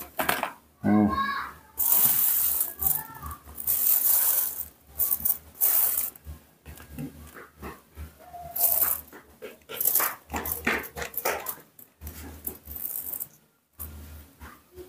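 A small knife cutting and scraping the seeds out of a halved ripe papaya, with a plastic bag crinkling, in a run of short, irregular scraping and rustling strokes.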